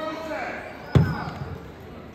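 A basketball bounced once on a hardwood gym floor, a single sharp thud about a second in, as the shooter dribbles at the free-throw line. It rings briefly in the gym.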